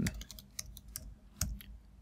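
Typing on a computer keyboard: a short run of irregularly spaced keystrokes as a line of code is entered.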